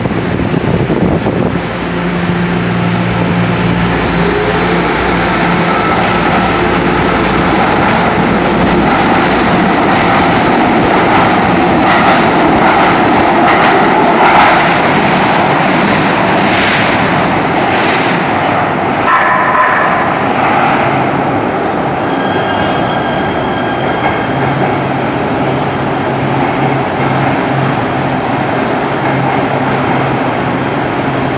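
A Nippon Sharyo light rail train running through an underground station tunnel: a loud, steady rumble with a low motor hum. Through the middle come repeated wheel clatters over the track, and a brief high pitched sound follows about two-thirds in.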